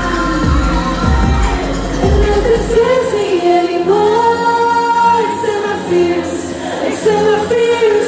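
Live amplified pop music with sung vocals over a backing track. The heavy bass beat cuts out about three seconds in, leaving held vocal lines over lighter accompaniment.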